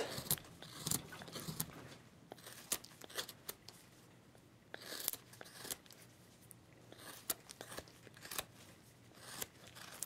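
Hand chisel cutting into a basswood block: a series of short, sharp cracks and snaps as the blade bites and chips break off, with a couple of longer scraping strokes about halfway through and near the end.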